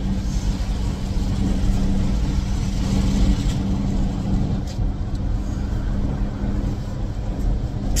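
Steady road and engine rumble inside a moving car's cabin, with a low, even hum.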